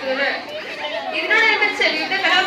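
Speech: a girl speaking into a microphone.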